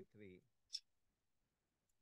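Near silence in a pause between spoken phrases, broken by one short, faint click a little under a second in.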